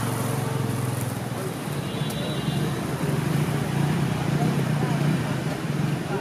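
Street ambience at a roadside stall: road traffic running past, with indistinct voices of people talking from about two seconds in.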